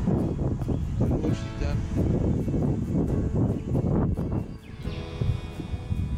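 Wind rumbling and buffeting on a body-worn camera's microphone. A brief steady tone sounds about a second in, and a longer one with several pitches together comes near the end.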